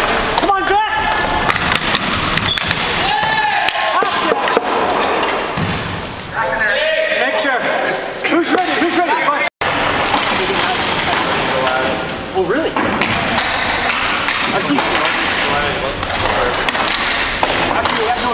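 Ball hockey play on a hardwood gym floor: sticks clacking and the ball knocking on the floor, with players shouting to each other in the echoing hall.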